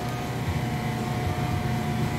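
Loud, steady low mechanical hum filling a small shop, with a faint thin whine held over it.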